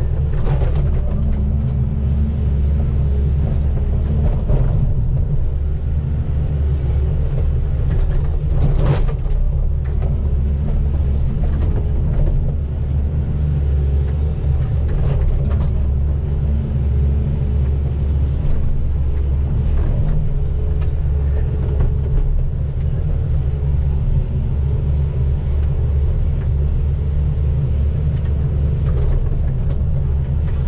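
Volvo EC220DL hydraulic excavator's diesel engine and hydraulics running steadily under load, a deep drone heard from inside the cab, with a few short knocks and clatters as the bucket works the soil.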